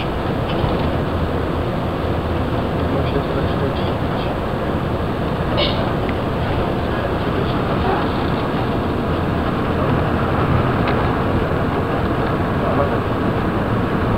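Steady engine and road rumble inside a moving bus's cabin, with a few faint rattles.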